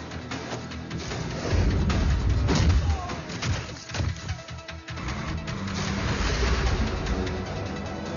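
Action-film soundtrack: a dramatic music score mixed with fight and crash sound effects. Sharp hits and crashes come in the first five seconds, the loudest with a deep rumble about two seconds in, then the music carries on steadily.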